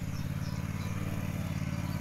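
Honda ride-on mower's engine running steadily as it drives across grass, a low even hum.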